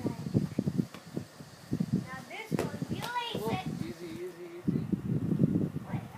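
Children's voices in unclear shouts and calls, one call held for about a second near the middle, with a few sharp knocks that fit a soccer ball being kicked.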